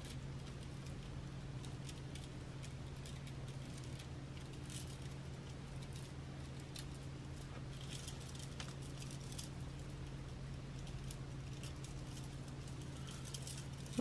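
Faint clicking and rattling of beads knocking together as a beaded bracelet is handled and turned, in scattered small clusters, over a steady low hum.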